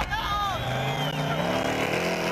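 Rally car engine running hard as the car slides past, its note climbing slightly in the second half, with spectators shouting over it.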